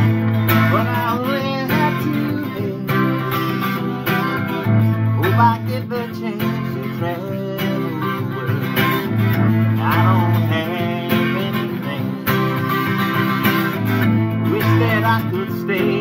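Vangoa 12-string acoustic guitar strummed in a steady chord rhythm, the chord pattern repeating about every four to five seconds.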